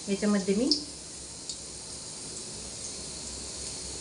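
A woman's voice briefly at the start, then a steady sizzle of batter-coated potato vadas frying in hot oil in a pan on a gas stove.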